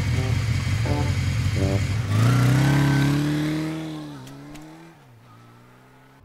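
Motorcycle engine idling, then revving up about two seconds in as the bike pulls away, its engine note slowly sinking and fading out over the next few seconds.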